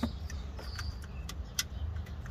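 A handful of sharp metallic clicks and taps from pliers and hands working the alternator's wiring connectors in a van's engine bay, the loudest about one and a half seconds in, over a steady low rumble.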